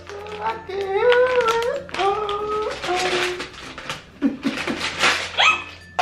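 A person's voice making drawn-out, wordless vocal sounds, with a short rising vocal glide near the end.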